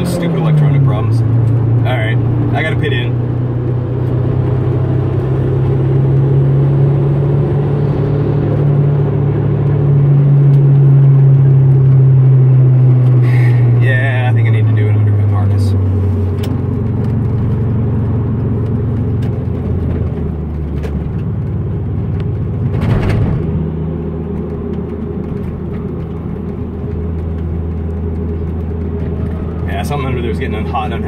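In-cabin sound of a turbocharged 2002 Hyundai Tiburon's 2.0 L four-cylinder engine under hard track driving. The engine note drops at the start, climbs slowly to its loudest about ten seconds in, falls away again by about sixteen seconds and runs lower after that. There is a sharp knock a little past twenty seconds.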